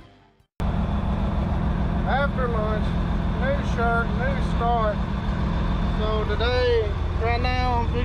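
John Deere 4650 tractor's six-cylinder diesel engine running steadily, heard from inside the cab. It is a low, even drone that sets in suddenly just after a short bit of fading music.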